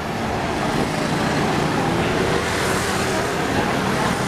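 Steady city street traffic noise, with a bus running close by.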